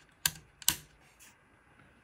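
Small toggle switch (a newly fitted bright switch on a tube guitar amp chassis) being flipped by hand: two sharp clicks in the first second and a fainter one about halfway through.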